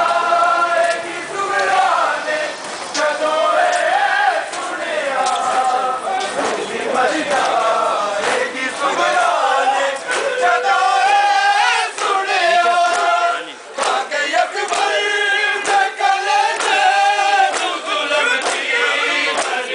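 A crowd of men chanting a Muharram mourning lament (nauha) together in loud unison, with sharp hand slaps of chest-beating (matam) breaking through the chant. The chant dips briefly about two-thirds of the way in.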